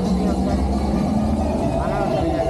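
A motor vehicle's engine running close by, a steady low rumble, with people's voices over it.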